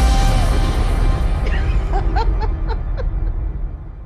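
Pop song track playing back, with singing and a steady bass beat. The last held sung note ends about half a second in and the music fades toward the end, with some chuckling over it in the middle.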